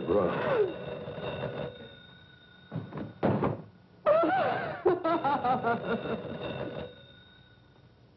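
A woman's wordless, distressed cries: a falling cry at the start, short bursts around three seconds in, then a long wavering wail.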